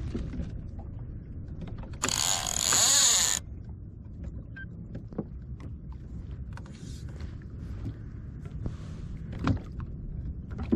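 Fishing reel being cranked in, a mechanical whir with small clicks, over a steady low rumble of water and wind on the kayak. About two seconds in, a loud rushing noise lasts for over a second.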